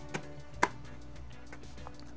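Two short, sharp knocks, the second louder, as a resin-filled cornhole bag is handled and turned over on a cutting mat, with faint background music.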